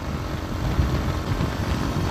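Motorcycle engine running steadily while riding at road speed, with a rough low rumble of engine and wind noise from the rider's position.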